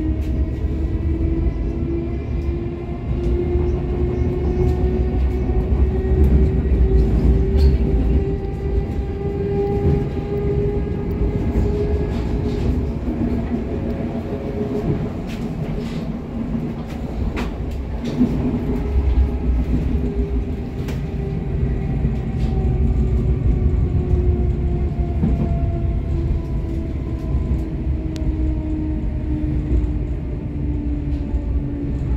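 Cabin sound of a LEW MXA electric suburban train (HÉV) under way: a steady low rumble with a whine from the traction drive whose pitch climbs over the first ten seconds or so, holds, then sinks again toward the end as the train gathers speed and later slows. Occasional sharp clicks from the running gear sound over it.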